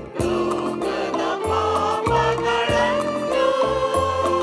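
Church choir singing a liturgical hymn with musical accompaniment.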